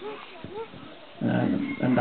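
A man speaking Thai into a handheld microphone: quieter for the first second, then speaking loudly again from a little over a second in.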